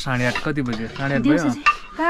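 A man's voice speaking, drawn out almost like singing, for about the first second and a half, followed by a single sharp click near the end.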